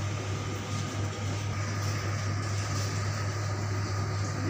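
Steady low machine hum with an even hiss of air noise over it, typical of a kitchen fan or air-conditioning unit running.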